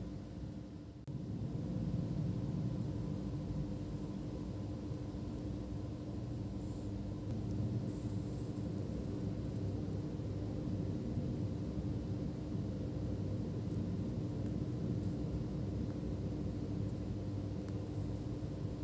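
Steady low background rumble with a constant hum, a little louder from about a second in; no distinct handling sounds.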